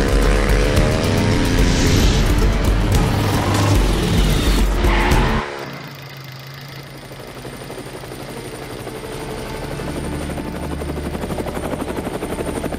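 Dirt bike engine revving hard, its pitch rising. It cuts off abruptly about five seconds in, and the thudding of a helicopter's rotor grows louder over a low steady hum.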